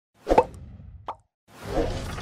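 Animated logo intro sound effects: a sharp pop, then a smaller click about a second in, a moment of silence, and a swelling sound near the end that leads into intro music.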